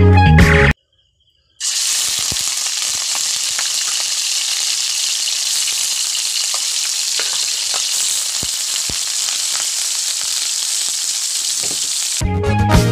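Cubes of pork sizzling as they fry in hot oil in a wok: a steady hiss with scattered small pops. It starts suddenly about a second and a half in, after a short burst of music and a brief silence.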